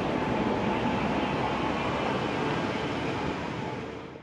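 Busy city street ambience: a steady wash of passing car and bus traffic with crowd hubbub, fading out near the end.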